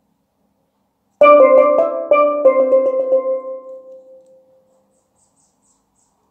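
Low tenor steelpan playing one short melodic phrase, starting about a second in: several notes struck in quick succession, then ringing on and fading away by about four and a half seconds in.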